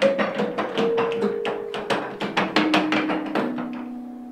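Practice carillon: wooden baton keys striking xylophone-like bars, a quick run of notes stepping down in pitch over the clatter of the keys. The last low notes are left ringing and fade away.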